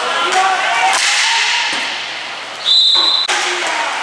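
A referee's whistle, one short steady blast of about half a second near the end, the loudest sound here. Under it, clicks and knocks of hockey sticks, ball and inline skates echo in a large hall, with players' voices calling early on.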